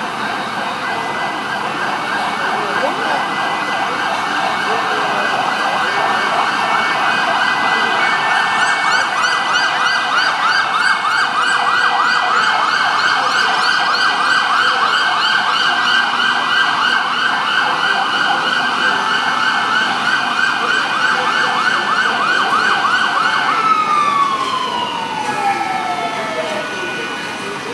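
Fire engine sirens sounding together in a rapid up-and-down yelp, growing louder over the first several seconds. Near the end one siren winds down in a long falling glide.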